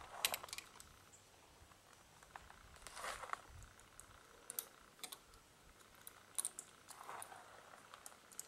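Faint scattered small metallic clicks and ticks as a stainless steel nut and washer are spun off the threaded stud of a wedge bolt by hand.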